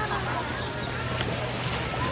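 A boat engine running with a steady low hum, over a noisy wash of wind and sea.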